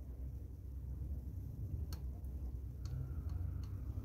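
A handful of faint clicks from the NanoVNA analyser's jog switch as the marker is stepped along the sweep, starting about two seconds in, over a low steady hum.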